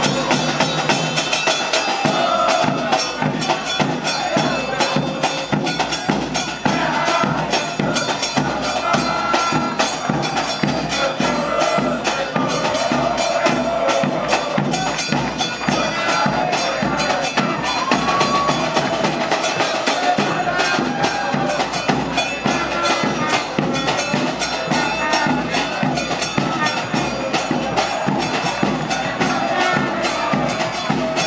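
A football supporters' band: many fans singing a chant together over a steady beat of drums and hand percussion.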